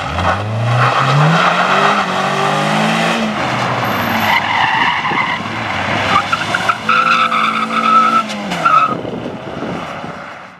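Racing hatchback engines revving hard. A Peugeot 106's engine climbs steeply in pitch as it accelerates out of a turn. Later a Volkswagen Polo's engine revs through a cone turn while its tyres squeal, in one long high squeal and then a short one, before the engine note drops off.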